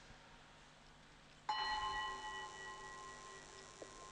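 Altar bell struck once about a second and a half in, ringing with several clear tones that slowly fade. It marks the blessing with the monstrance at Benediction of the Blessed Sacrament.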